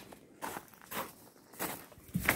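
A person's footsteps on a gravel path, three steps at a walking pace.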